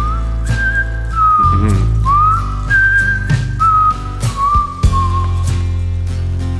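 A whistled melody: one clear tone that slides up into a few held notes and then steps down, over strummed acoustic guitar.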